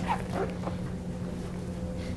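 A steady low hum with a fainter higher tone above it, and a few brief faint squeaks in the first half-second.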